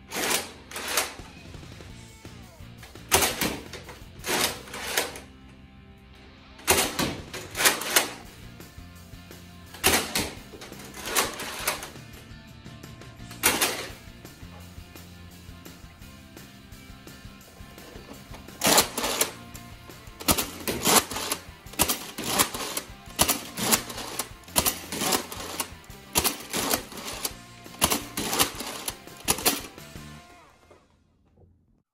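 Nerf Mega Centurion, a spring-powered bolt-action foam dart blaster, being primed and fired over and over: sharp plastic clacks of the bolt and shots in quick clusters, with a lull of a few seconds midway and a faster run of them in the last third. Background music with sustained low notes plays underneath.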